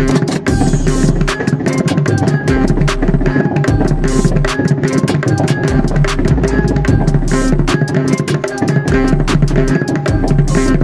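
Mridangam played by hand, a fast run of ringing strokes on its right head, over a trap beat. The beat has deep bass notes each held about a second and quick hi-hat-like ticks.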